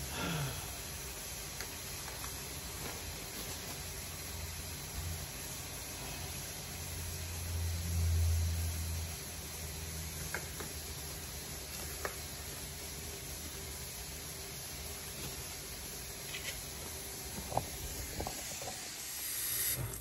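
Kitchen faucet running steadily into a stainless steel sink, a constant hiss of water. A low rumble swells briefly about eight seconds in, with a few faint ticks scattered through.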